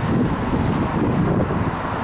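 Steady low rumble of wind buffeting the microphone, with road traffic noise beside a roadway.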